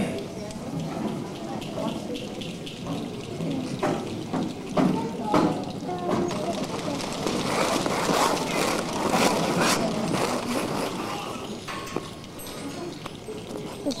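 Many hands clapping unevenly, with children's chatter mixed in. The clapping grows thickest around the middle, then thins out.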